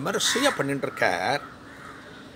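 A man speaking in Tamil, with a crow cawing about a second in; the rest is quiet outdoor background.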